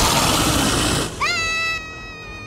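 Cartoon sound effects: a loud rushing hiss for about a second, then a long high-pitched, meow-like cry that rises quickly and then holds steady.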